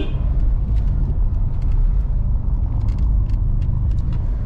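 Steady low rumble of a car driving slowly, heard from inside the cabin, with faint scattered ticks.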